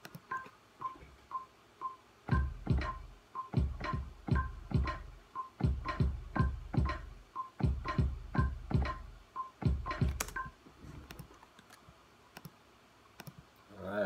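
Logic Pro X metronome clicking two beats a second at 120 bpm, with a higher accented click at the start of each bar, through a one-bar count-in. A software drum kit played in live joins about two seconds in with an uneven pattern of drum hits over the click, and both stop about ten seconds in.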